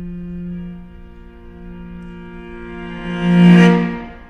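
Solo cello holding a long low note that swells into a loud, bright accent about three seconds in and then falls away.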